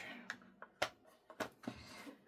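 A Distress Oxide ink pad dabbed onto paper, giving three or four light taps.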